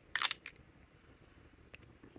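Snap cap of a TWSBI Eco fountain pen pulled off with a short sharp click just after the start, then a smaller click and a couple of faint ticks near the end as the pen is handled.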